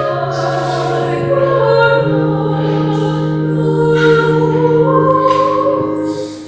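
Slow church music: voices singing over a sustained accompaniment, with long held notes that change every second or two.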